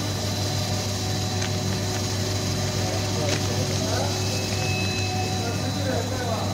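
Corn chip production line machinery running: a steady low hum with a thin high whine over it.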